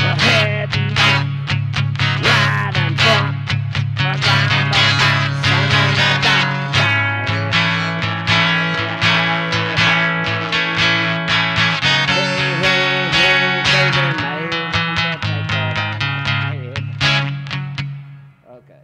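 Guitar strumming fast chords over a steady low bass, changing chords a few times, then breaking off near the end as the player loses his way through the song.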